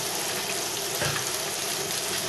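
Hot olive oil sizzling steadily in a pot as chopped vegetables are tipped in from a wooden chopping board.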